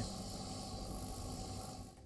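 A steady hiss of background noise that dies away near the end.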